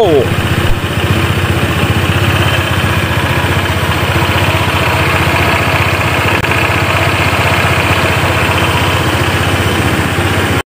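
Honda PCX 160 scooter's single-cylinder engine running steadily with a rhythmic chopping sound likened to a helicopter. This is a reported issue with this engine, one to have checked under warranty.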